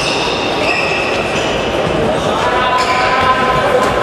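Futsal match play echoing in a sports hall: players' shoes squeaking on the court floor and the ball being struck and bouncing, with players calling out. High squeals come about half a second in and again through the second half.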